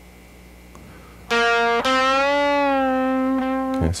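Electric guitar in C standard tuning playing a slow lead phrase. A note on the 7th fret of the third string is picked, then the 9th fret is sounded about half a second later. That note is bent up slightly and slowly released, ringing for about two seconds before it is cut off.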